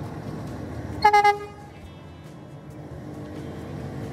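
A vehicle horn gives one short toot about a second in, over steady low background noise.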